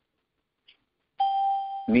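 A single steady electronic tone, like a chime or alert beep, held for under a second in the second half and cutting off as a man's speech resumes.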